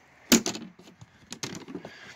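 Hinged plastic lid flaps of a storage tote being folded shut: a sharp plastic clack about a third of a second in, then several lighter clicks and knocks as the flaps settle.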